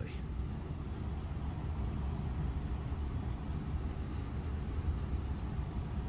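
Steady low rumble of background noise, even throughout, with nothing standing out above it.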